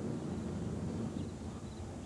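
Quiet, steady low background rumble with no distinct events: room tone.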